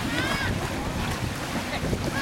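Wind buffeting the microphone over small waves washing at the water's edge, with high-pitched voices of bathers calling out briefly near the start.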